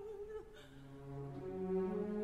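Operatic orchestra music: a singer's wavering held note dies away about half a second in. The orchestra then holds soft sustained chords that swell towards the end.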